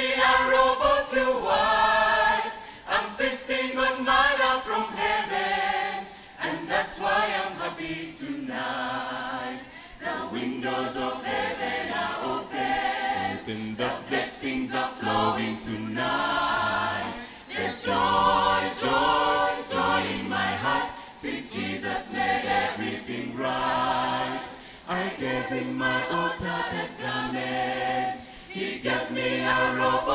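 Mixed church choir of men and women singing a gospel song a cappella, several voices in harmony, phrase after phrase with short breaths between.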